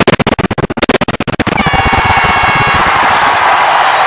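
A song with a fast run of sharp, rapid beats breaks off about a second and a half in. A crowd then cheers and applauds, with a high held tone over it for about a second.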